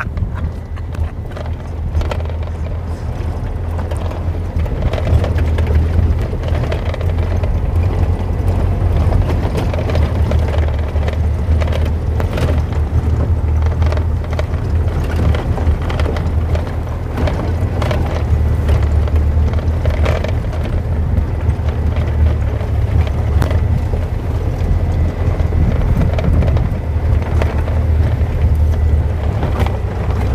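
Open safari vehicle driving along a bumpy dirt track: a steady low engine drone with frequent knocks and rattles from the body jolting over the ruts.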